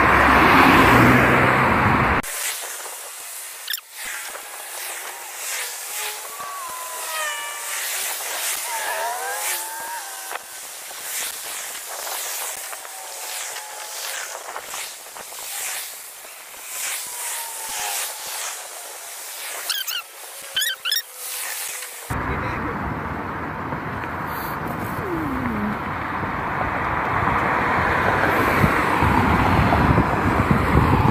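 Cars passing on a multi-lane road: a loud pass just after the start, and another building up over the last several seconds. In between is a thinner, quieter stretch with faint distant voices.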